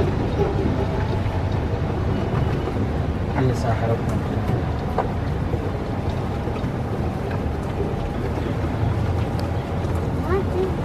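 Rented golf cart in motion: a steady low rumble of the ride, with brief faint voices a few seconds in.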